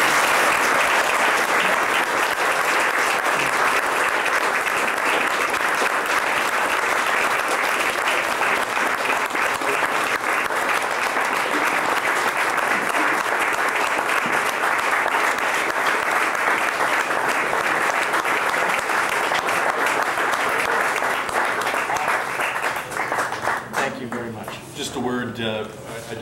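Audience applauding steadily for a long stretch, dying away near the end.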